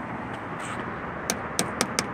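About four light fingertip taps on the Prius's plastic rear bumper protector, falling in the second half, over a steady low background hum.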